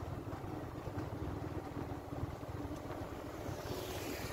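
Outdoor ambience beside a wide road: a steady, low, fluctuating rumble with no music.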